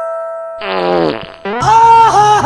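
A fart sound effect about half a second in, with its pitch falling, over the tail of ringing chime notes. About a second and a half in, louder music starts with a wavering, bending melody.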